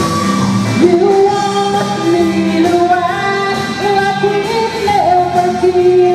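A woman singing lead into a microphone, holding long notes, backed by a live band of electric guitar, bass guitar, keyboard and drums.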